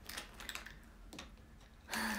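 Light tapping clicks of fingers typing, a handful of them in quick succession, the last about a second in.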